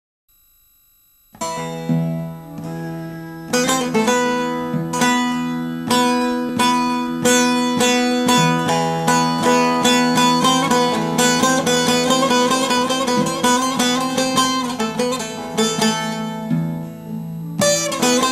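Instrumental introduction of a Turkish sıra gecesi folk song: plucked string instruments play a running melody over a sustained low note, starting about a second in after a brief silence.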